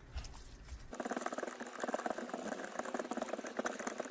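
Noodles and cheese sauce being stirred in a pot, a dense wet, sticky crackling that starts about a second in, after a couple of light clicks.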